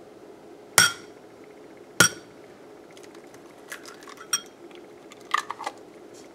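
Hard strikes against a glass mixing bowl: two sharp clinks with brief ringing, about one and two seconds in, then several lighter clinks and taps in the second half.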